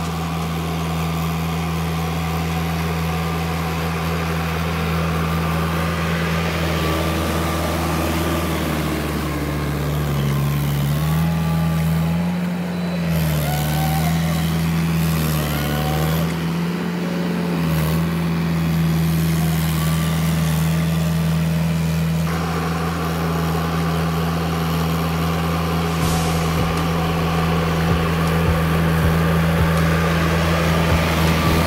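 Diesel tractor engine running under load as the cage-wheeled tractor puddles a flooded paddy field. It drones steadily, and its pitch rises and falls several times partway through as the engine speed changes.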